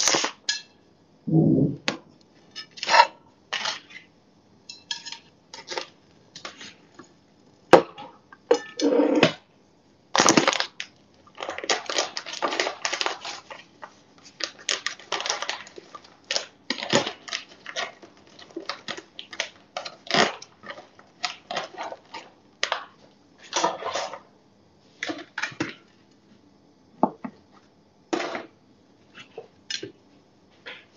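Plastic bread bag crinkling and rustling in many short, irregular bursts as slices of bread are pulled out and laid on a plate.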